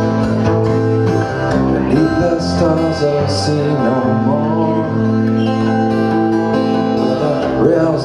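Steel-string acoustic guitar played as song accompaniment, chords ringing on at a steady level.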